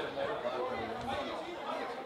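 Overlapping voices of several people chatting, with no single clear speaker standing out.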